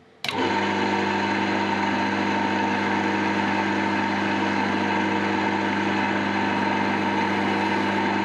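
Small lathe running at a steady speed, spinning a wooden tool handle: an even motor hum with a faint whine, starting abruptly just after the start.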